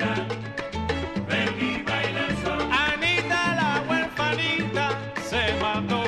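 A Cuban son/salsa band recording played from a vinyl record, in an instrumental passage with no vocals. A bass line steps through held notes under melody lines that slide and bend in pitch around the middle.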